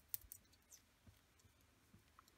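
Faint clicking of metal circular knitting needles as stitches are worked, a handful of light clicks mostly within the first second.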